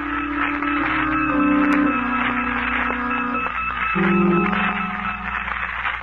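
Music bridge of slow, held organ chords, the notes changing about once a second.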